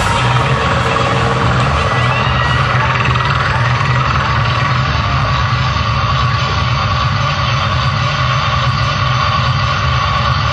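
Loud live rock band playing, heard from the crowd as a dense, steady wall of sound, with the bass heavy and the individual notes blurred.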